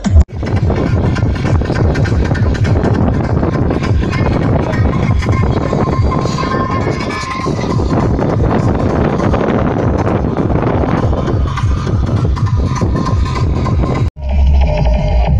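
Loud, distorted techno from a free-party sound system, picked up by a phone's microphone as a dense, noisy wash with heavy bass and no clear beat.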